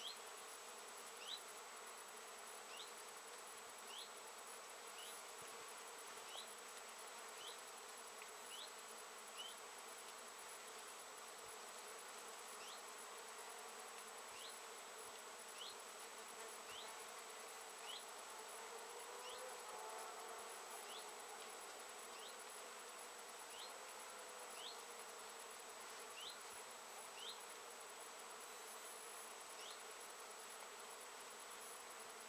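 Faint, steady buzzing of many bees foraging on flowering Japanese knotweed. A short, high, rising chirp repeats about once a second, pausing now and then.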